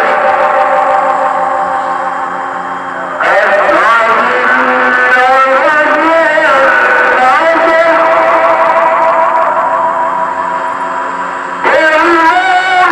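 Mosque tarhim melody (mawal) in long, ornamented phrases with wavering held notes. One phrase fades away and a new one starts abruptly about three seconds in, and another begins just before the end.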